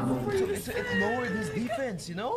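Speech: a man's voice speaking Japanese dialogue from the anime episode, with pitch rising and falling in slow arcs.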